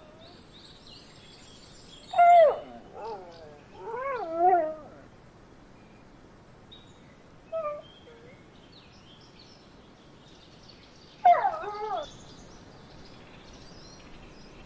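Newborn puppies crying in short, high, wavering squeals and whimpers. A loud cry comes about two seconds in, two quivering cries follow around four seconds, a brief one near eight seconds, and another loud cry after about eleven seconds.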